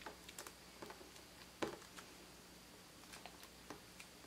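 Faint, scattered tacky clicks and ticks of a dried liquid-latex strip being peeled and handled on a plastic tray lid, with one sharper click about a second and a half in.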